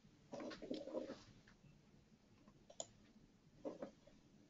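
Very quiet room tone with a few faint clicks and a short muffled rustle about half a second in.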